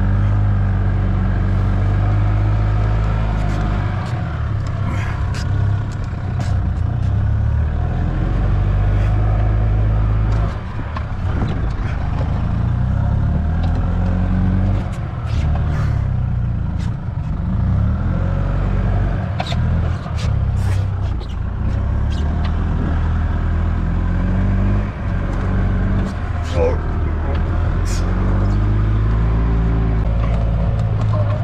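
A golf cart's engine running under load, its pitch rising and falling repeatedly as the cart drives through fresh snow, with scattered clicks and rattles.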